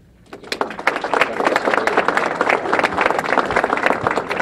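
Audience applauding, starting about half a second in and carrying on steadily.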